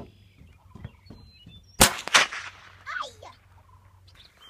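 AR-15 rifle fired about two seconds in: two sharp cracks less than half a second apart, the sound trailing off after them.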